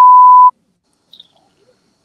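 Test tone played with television colour bars: a loud, steady, single-pitched beep lasting about half a second that cuts off suddenly. It is the classic off-air test signal, used here as a 'technical difficulties' gag.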